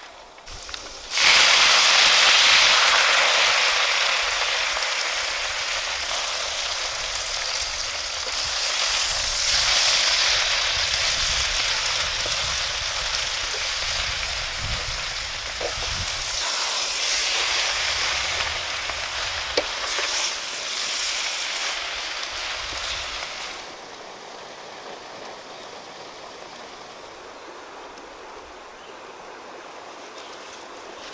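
Leafy greens frying in hot oil in a wok: a loud sizzle starts suddenly about a second in as the wet leaves hit the oil. It slowly fades and swells as they are stirred with a wooden spatula, then drops to a much quieter hiss about three quarters of the way through.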